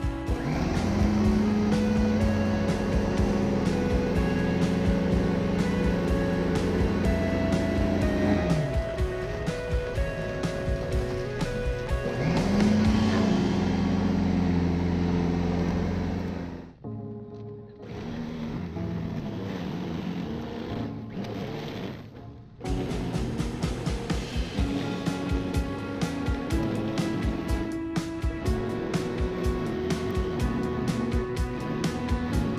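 Ryobi 10-amp corded electric snow shovel's motor spinning up and running steadily, winding down about eight seconds in, then starting again a few seconds later and cutting off near the middle. Background music with guitar and a beat plays throughout.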